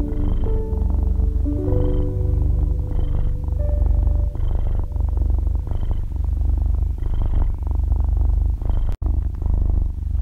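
A cat's steady low purr, swelling about once a second with each breath, under slow, soft piano notes. The sound drops out for an instant near the end.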